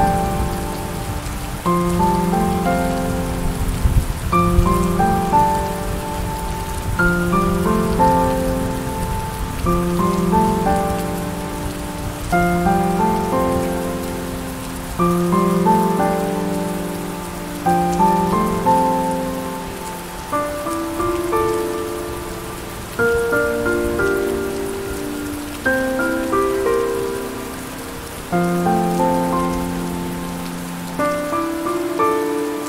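Slow, soft piano music, a new chord struck and left to fade about every two and a half seconds, over steady rain. Low thunder rumbles in the first few seconds.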